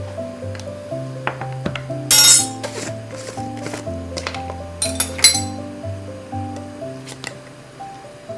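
Instrumental background music with a steady run of held notes, over two brief loud clinks of kitchenware as seasonings are handled, about two seconds in and about five seconds in, the second with a short ring.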